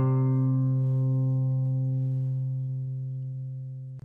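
Music: a single guitar note with its overtones, ringing on and slowly fading away.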